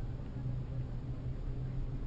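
Low, steady rumble of a bicycle rolling over city pavement, heard through a camera mounted on the bike, with a few faint ticks.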